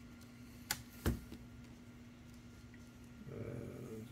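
Two light, sharp clicks about a second in, from a screwdriver and small screws being worked into a laptop's screen frame, over a faint steady hum.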